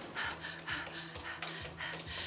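A young woman panting hard in quick, ragged breaths, about three a second, from fear and running, over a low sustained drone in the film score.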